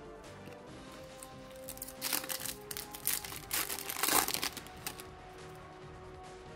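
Crinkling and rustling of trading cards and foil booster-pack packaging being handled in the hands, in clustered bursts from about two seconds in until about five seconds, over faint background music.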